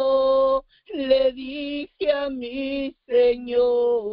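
A woman singing a worship song alone and unaccompanied. She holds notes in short phrases, with brief breaks between them in which the sound drops away completely.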